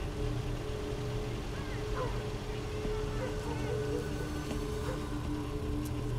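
A car idling with a low steady rumble, under a soft sustained music drone holding two notes.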